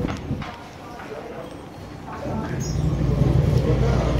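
Indistinct voices with a few clicks, then a low rumble that sets in a little past halfway and grows louder.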